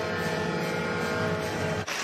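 Arena goal horn sounding a long, steady blast of several held pitches after a goal, cut off suddenly near the end.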